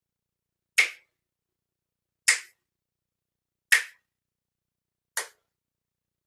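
Four single finger snaps, evenly spaced about a second and a half apart, beating out the slow count of a five-count inhale through the nose in a breathing exercise.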